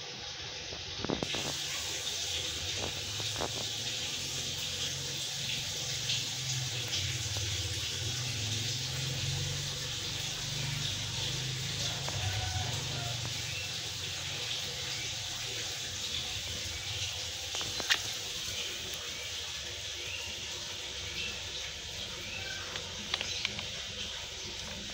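Steady rushing background noise, like running water, with a few faint clicks and a sharper click about 18 seconds in.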